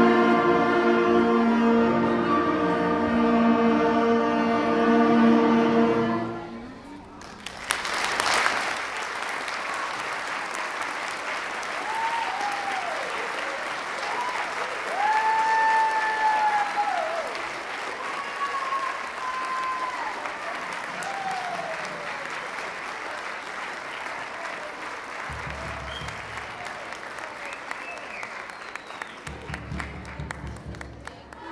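School concert band holding a final sustained chord that is cut off about six seconds in. The audience then breaks into applause that goes on, with a few high rising-and-falling calls from the crowd.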